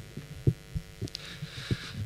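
Dull low thumps of microphone handling, about one every half second, as the microphone is moved into place at the lectern, over a steady low electrical hum.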